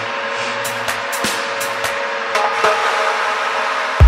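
Techno track in a breakdown: no kick drum or bass, only sustained synth tones with scattered hi-hat-like percussion ticks, slowly rising in level.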